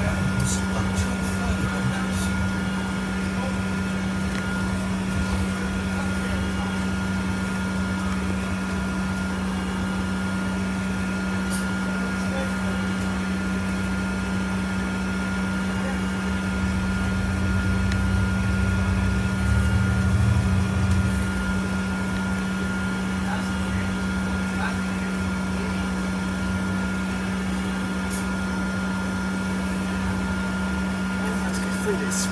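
A double-decker bus heard from inside the upper deck as it drives: a steady drone with a constant low hum and a thin, higher steady tone over it. The low rumble grows louder for a few seconds past the middle, then settles.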